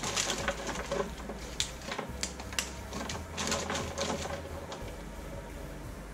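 Thin pieces of milk-chocolate shell clicking and snapping against each other as hands break them up and spread them over parchment paper in a tin. The clicks come thick and fast, then thin out after about four seconds.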